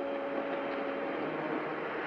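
Steady, even wash of ocean surf with a faint steady tone running underneath.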